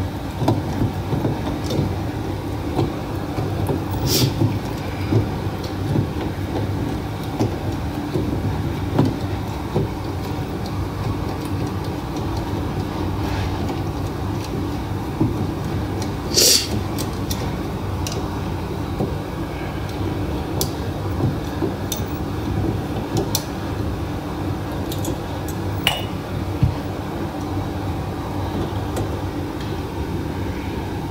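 Steady low background hum, with scattered sharp clicks and light rattles of plastic and metal as hands work at the bulb socket of a removed HID headlight housing.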